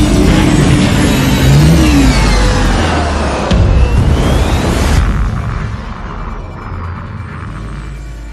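Action-film soundtrack: music score mixed with heavy rumbling, booms and sweeping whooshes of water explosions. A sharp impact comes about three and a half seconds in, and the din thins out after about five seconds.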